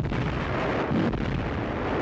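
Battle sound effect of distant artillery fire and explosions: a steady, dense noise with no single shot standing out.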